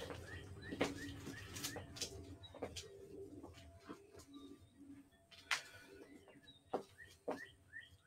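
Faint songbirds chirping, short repeated calls over and over, with a few light clicks and knocks scattered through.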